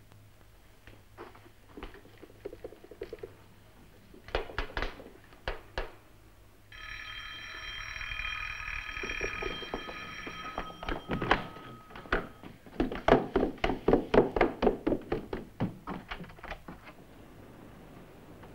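An electric doorbell rings in one long steady tone for about four seconds. A quick run of sharp taps, like hurried footsteps, follows. Scattered taps come before the bell.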